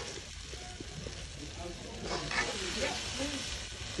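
Ground egusi (melon seeds) frying in oil in a metal pot, sizzling steadily while a spoon stirs it through.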